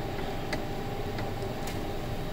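Steady background hum and hiss with a few faint, light clicks.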